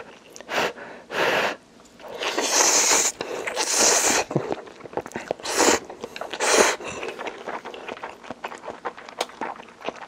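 A person slurping Indomie instant noodles off chopsticks: several long slurps in the first half, then chewing with many small wet clicks.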